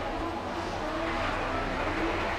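Steady dining-room background noise: a constant low hum with faint, indistinct voices.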